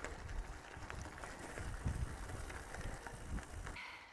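Bicycle rolling along a loose gravel road: tyres crackling over the stones with many small clicks, under a low rumble of wind on the microphone. It cuts off suddenly near the end.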